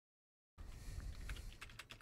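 Computer keyboard keystrokes: a quick run of sharp key clicks over a low rumble, cutting in abruptly about half a second in.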